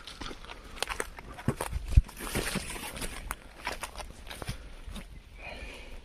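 Footsteps through leafy forest undergrowth: irregular crunches and rustles of leaves and twigs underfoot, the sharpest knock about two seconds in.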